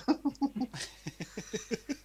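Hearty laughter: a quick run of short 'ha' pulses, about four or five a second, each dropping in pitch.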